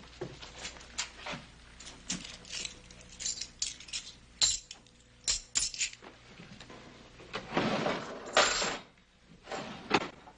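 Small metal objects clinking and jingling in a string of short sharp taps, with a longer rustle about seven and a half seconds in.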